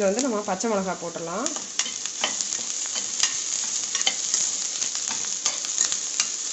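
Chopped shallots sizzling as they fry in oil in a pressure cooker, stirred with a slotted steel spatula that scrapes and clicks against the metal pan.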